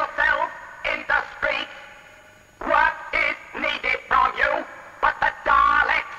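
A Dalek's harsh, ring-modulated electronic voice broadcasting through a wooden valve radio set, in short echoing phrases.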